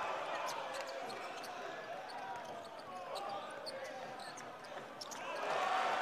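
Live game sound on an indoor hardwood basketball court: a ball being dribbled, with short sharp knocks, over a bed of crowd chatter. The crowd grows louder about five seconds in.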